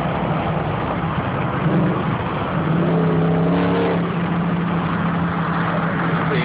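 Supercharged Jeep Grand Cherokee SRT8 V8 pulling hard in third gear, heard from inside the cabin: a loud, deep engine drone that grows louder and steadier about halfway through.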